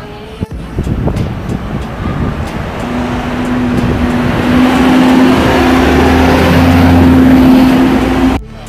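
Street traffic: a motor vehicle's engine grows louder over several seconds with a steady low hum until it is the loudest sound.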